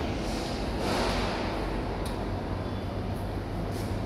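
Steady background hum with a brief swell of hiss about a second in, and a couple of faint light ticks as a dial torque wrench is worked on the hook nuts of a bread-slicer blade frame.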